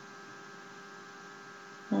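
Steady electrical hum made of several flat, unchanging tones, heard in a pause between words. A woman's voice comes in right at the end.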